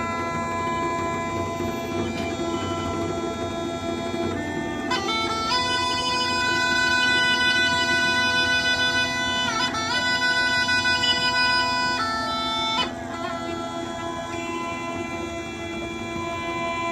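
Bulgarian gaida (goatskin bagpipe) playing a melody of held notes over its steady drone. About five seconds in the tune climbs to higher, louder notes, then drops back down about three seconds before the end.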